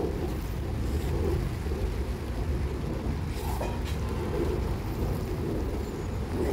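Steady low rumble of wind buffeting the microphone outdoors, with a few faint clicks about three and a half seconds in.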